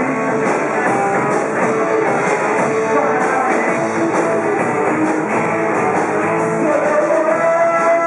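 Live rock band playing loudly and steadily, with electric guitar and drums.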